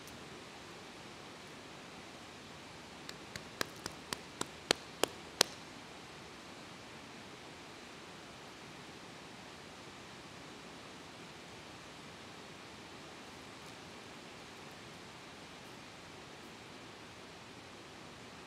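Faint steady hiss of room tone. A few seconds in comes a quick run of about eight sharp clicks or taps, each louder than the last.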